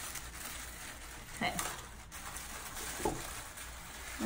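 Light crackling rustle of dry wreath twigs and tissue paper being handled, as a tie string is worked through the twigs by hand.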